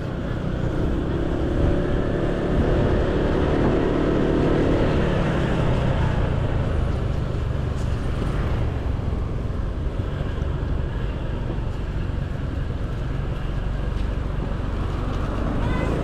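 Motor scooter engine running steadily at low road speed, heard from the rider's seat together with road and traffic noise.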